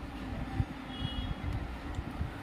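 Low, steady background rumble with a faint, brief high beep about a second in.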